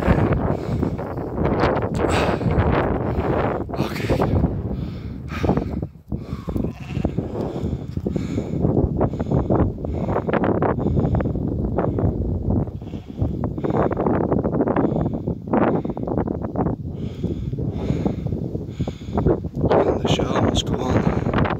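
Sheep bleating, over wind rumbling on the microphone.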